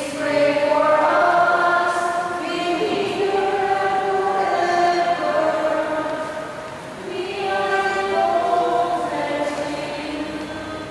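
A group of voices singing a hymn together in held notes, in two long phrases with a short breath about two-thirds of the way through.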